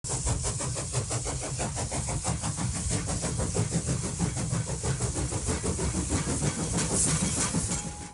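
Steam locomotive chuffing at a fast, even beat with hiss and low rumble, cutting off suddenly at the end.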